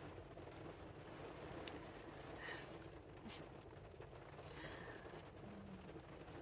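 Near silence: faint steady room tone with a low hum, a couple of soft small clicks and a few faint breaths.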